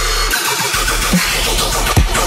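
Heavy dubstep mixed in 8D audio: distorted synth bass over sub-bass and punchy drum hits. The sub-bass drops out briefly about half a second in.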